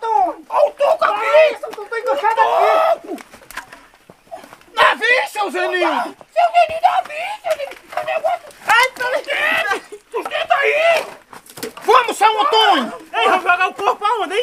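Speech only: people talking loudly throughout, with no other sound standing out.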